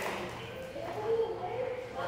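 Faint voices in the background of a large tiled room, with no clear sound from the dog or the trainer.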